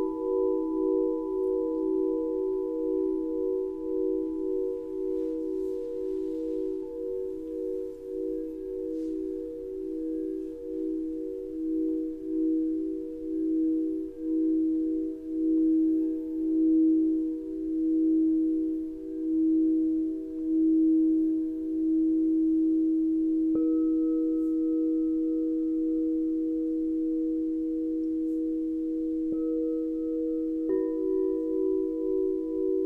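Several crystal singing bowls ringing together in long, overlapping tones that pulse and swell slowly. About three-quarters of the way through another bowl is struck, adding a fresh higher tone that rings on.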